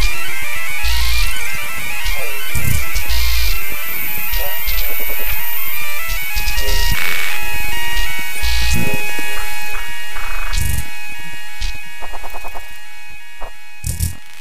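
Glitchy experimental electronic music (IDM): layers of held synth tones over irregular deep bass hits and sharp clicks. Near the end it breaks into a rapid stutter and thins out.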